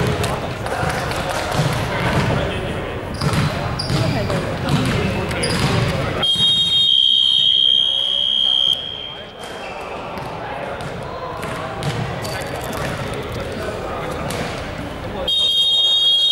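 Voices chattering and a basketball bouncing in a large hall. About six seconds in, a loud, steady, high-pitched game signal sounds for about two and a half seconds. A second one starts just before the end.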